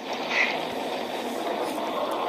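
A steady, even rushing noise with no voice in it, holding level throughout.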